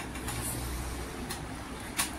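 A steady low rumble, with a few faint soft sounds of fingers working rice on a plate and a short click at the very end.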